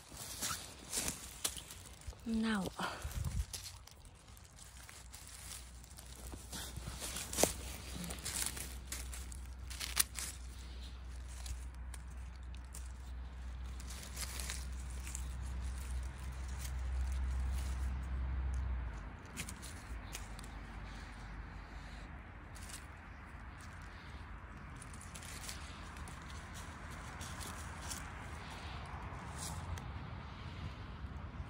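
Rustling and crackling of dry pine needles and leaf litter as hands dig around and cut bolete mushrooms from the forest floor, with a few sharp clicks in the first seconds. A low rumble runs through the middle stretch.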